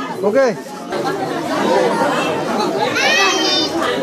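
A crowd of people talking over one another, with a high-pitched voice calling out about three seconds in.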